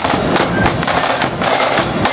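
Marching-band snare drums played together, a rapid, dense run of sharp strokes.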